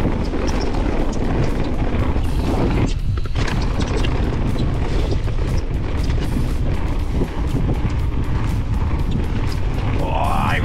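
Electric mountain bike ridden fast down a dirt forest trail: steady wind buffeting on the microphone and tyre rumble, with frequent irregular clicks and rattles from the bike over bumps and roots.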